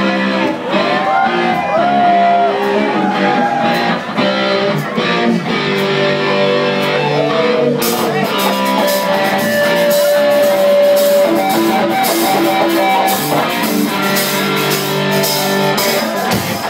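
Live rock band playing: electric guitar over bass and a drum kit, the guitar lines bending in pitch in the first few seconds. About eight seconds in the top end gets much brighter, and a long held note follows.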